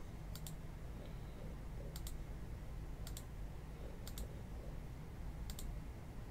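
Computer mouse button clicked four times, roughly every one and a half to two seconds. Each click is a quick double tick of press and release, over a faint steady low hum.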